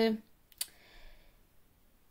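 A woman's voice trails off, then a single sharp click about half a second in, followed by a faint breath and a quiet room.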